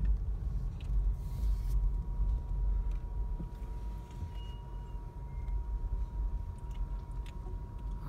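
Car cabin sound as the car rolls slowly: a steady low engine-and-road rumble with a faint, thin steady tone above it, and a brief hiss about a second in.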